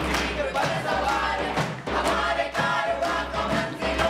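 A group of young men and women singing and chanting in unison as a street-play chorus, voices raised together over a regular beat about twice a second.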